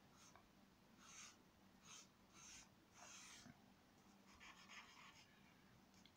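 Faint scratching of a charcoal stick drawing lines on paper: several short strokes in the first half, then a longer run of light strokes.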